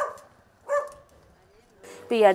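A dog barking: two short, sharp barks about three-quarters of a second apart, one at the start and one just under a second in.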